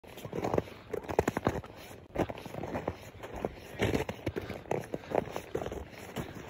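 Footsteps crunching in snow on lake ice, a step roughly every half second, as someone walks steadily across.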